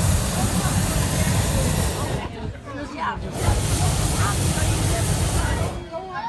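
Hot air balloon's propane burner firing in two long blasts, each about two to two and a half seconds, with a short break between. This is the hot-inflation stage, heating the air in the envelope to give it lift and stand it upright.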